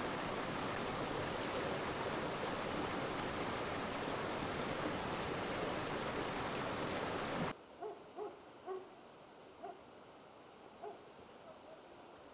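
Fast-flowing stream water rushing in a steady, loud hiss that cuts off suddenly about seven and a half seconds in. A quieter stretch follows with five short pitched calls spread over about three seconds.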